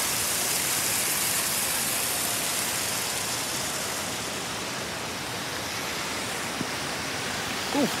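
A steady, even rushing hiss that slowly grows a little quieter.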